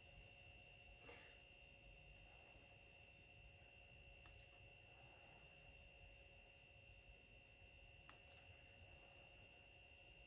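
Near silence: faint room tone with a steady high-pitched whine and a few soft clicks.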